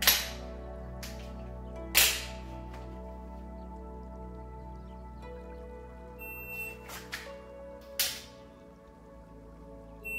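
Sharp clicks from pistol dry-fire draw practice against a shot timer: one right at the start and a loud one about two seconds in, then a few fainter clicks and another sharp one about eight seconds in. Faint steady tones run underneath.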